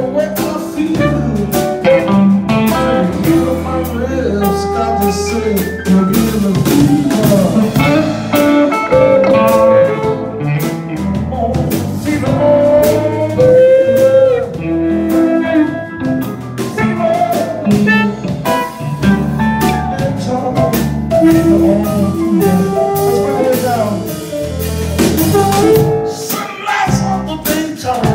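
A live blues band playing an instrumental passage: electric guitar, bass guitar, drums and amplified harmonica, with notes bending in pitch over a steady beat.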